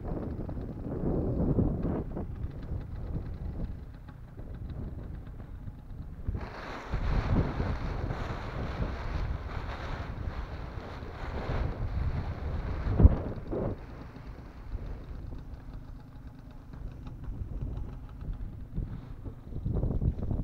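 Wind buffeting a helmet-mounted camera's microphone, with a stretch of rustling paraglider wing fabric in the middle and a single knock just after it.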